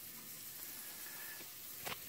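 Bacon frying in a pan, rendering its fat: a faint, steady sizzle.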